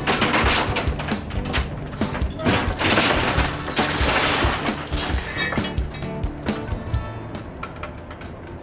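Oysters and shell clattering in many quick knocks as a dredge load is dumped onto a metal culling table, densest in the middle, over background music.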